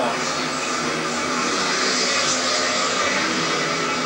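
Speedway motorcycles' 500 cc single-cylinder methanol engines racing flat out, a steady blended drone of several bikes, as carried on a television broadcast.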